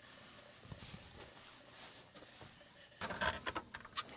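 Faint handling taps, then about three seconds in a run of louder rustling and scraping as the quilt block is laid on the felted-wool pressing mat and a clothes iron is set down and pushed across the fabric.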